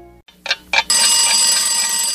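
The tail of a studio-logo music jingle fades out into a brief near-silent gap. About half a second in come two short sharp hits, then a loud, bright ringing sound that holds steady.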